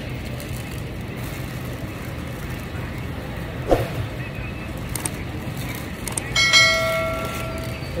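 Subscribe-button animation sound effects: a single click a little before midway, then a bell-like chime held for just over a second near the end, over a steady low supermarket hum.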